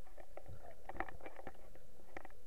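Underwater sound picked up by a submerged camera over a coral reef: irregular clicks and crackles, several a second, over a faint steady hum and a low rumble.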